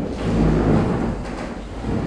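Low rumbling scrape of furniture and movement as people get up and shift about the room, loudest about half a second in, with chairs moved on the floor.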